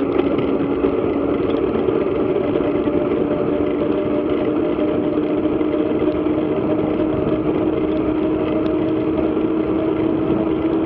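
Mountain bike freewheeling fast on asphalt: a steady rush of wind on the camera, with a hum from the tyres on the road that rises slowly in pitch as speed builds on the descent.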